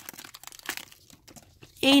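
Foil Pokémon booster pack wrapper crinkling as the cards are pulled out of the torn-open pack. A few sharp crackles in the first second, then quieter handling.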